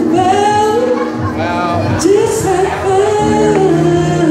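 A man singing an R&B ballad into a microphone, holding and gliding between notes, over a strummed acoustic guitar accompaniment.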